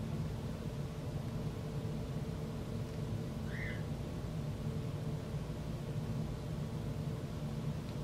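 Steady low room hum with no speech, and one faint, short high chirp about three and a half seconds in.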